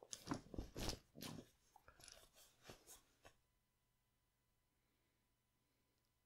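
Rustling and crackling of clothing against a leather sofa as a person shifts position, a quick irregular run of creaks and clicks lasting about three seconds that stops abruptly.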